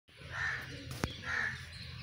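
Two short, harsh bird calls a little under a second apart, with a sharp click between them.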